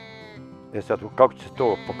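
A sheep bleats once, a short steady call lasting about half a second at the very start. A man then speaks.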